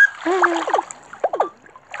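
Cartoon sound effects from a children's story app: a water splash with short squeaky, voice-like calls over it, heard twice, fading near the end.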